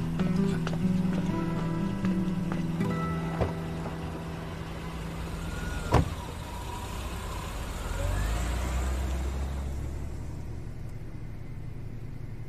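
Background music with held notes over a car: a single sharp knock, like a car door shutting, about six seconds in, then a low engine rumble as the car moves off.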